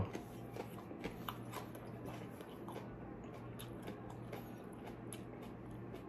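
Faint chewing of a raw hot pepper pod, with scattered small clicks from the mouth over a steady low hum.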